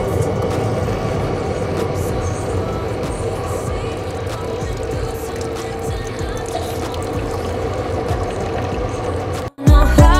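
Single-serve coffee maker brewing: a steady hum with a held tone, with coffee streaming into a ceramic mug from about halfway through. The sound cuts off suddenly near the end.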